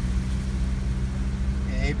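A car's engine and tyre noise heard from inside the cabin while driving at a steady speed: an even low hum.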